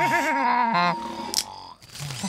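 A cartoon character giggling in quick high repeated bursts over a held musical note, then a short high hiss about a second and a half in.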